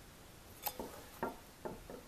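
Three light clicks from a Simpson planetary gear set as it is turned by hand in third gear, with the sun and ring gear driven together so the whole set turns as one.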